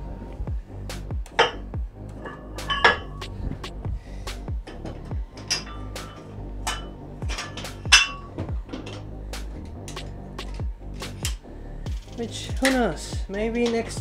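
Metal weight plates clinking against each other and the dumbbell handles as they are loaded on, a string of sharp ringing clinks, the loudest about eight seconds in, over background music.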